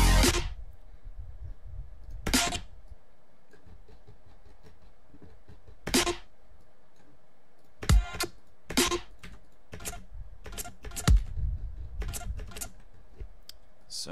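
Electronic dubstep-style track playing back from a production session stops abruptly just after the start. A low steady background remains, with about eight short, sharp hits scattered through the rest.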